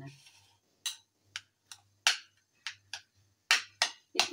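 A series of about eight short, sharp clicks, irregularly spaced, with a faint low hum underneath.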